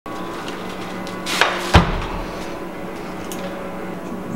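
A moped being handled: a short scrape, then one heavy thud a little under two seconds in, over a steady low hum.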